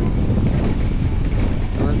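Steady low rumble of a moving combi minibus heard from inside at an open window, with wind on the microphone.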